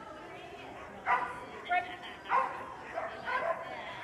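Dog barking about five times in short, sharp calls, roughly a second apart, while running an agility course.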